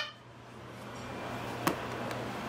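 A single sharp knock about one and a half seconds in: a plate set down on a plastic high-chair tray. Under it, quiet room tone with a low steady hum.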